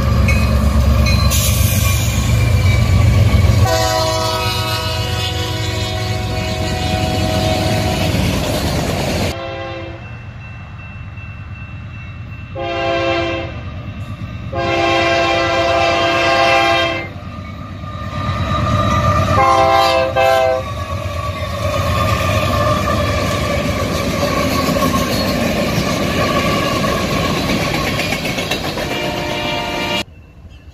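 Union Pacific diesel freight locomotives pass close with a deep engine rumble while the air horn sounds a chord four times: first one long blast of about five seconds, then a short one, a longer one and another. After that comes the steady noise of the train's cars rolling by.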